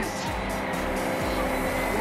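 Steady road traffic noise, an even rush with no single event standing out, with a music bed of held tones underneath.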